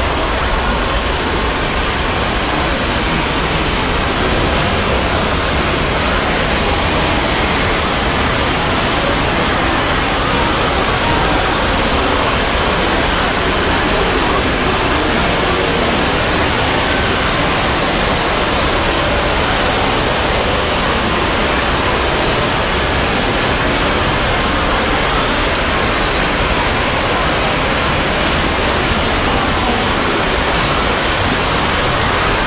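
A dense, steady wall of noise from dozens of cartoon soundtracks played on top of one another. So many overlap that they blend into an even rush in which no single voice or sound stands out.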